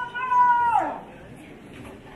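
A person's high-pitched held whoop, steady in pitch and then sliding steeply down and breaking off about a second in. A low crowd murmur follows.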